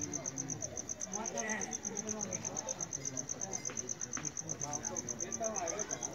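Crickets chirping: a steady, high-pitched pulsing trill at about eight or nine pulses a second, over faint voices in the background.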